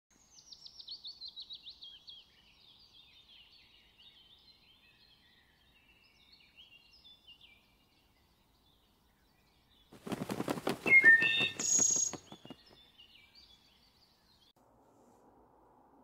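Northern cardinal song: a rapid series of chirps falling in pitch, then softer scattered chirping. About ten seconds in comes a loud rattling burst of rapid clicks lasting about two seconds, the loudest sound here.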